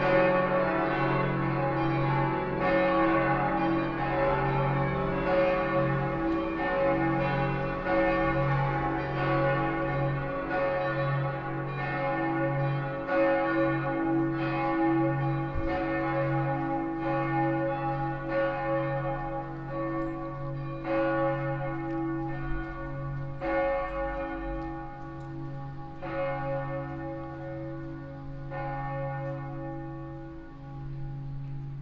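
Church bells ringing, a continuous run of overlapping strikes, each tone hanging on under the next. The ringing grows somewhat quieter toward the end.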